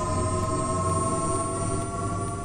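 A synthesized sound effect: a held chord of several electronic tones over a hiss, creeping slightly upward in pitch.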